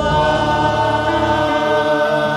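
Church worship team singing together into microphones, several voices holding a long chord.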